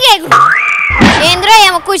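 Comedy sound effect: a whistle-like tone that slides up, holds briefly, then glides slowly down, with a child talking over its end.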